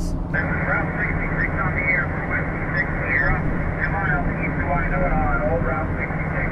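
Another station's voice coming through the mobile HF radio's speaker as single-sideband audio, narrow and thin with everything above the upper midrange cut off. The truck's steady road and engine rumble runs underneath.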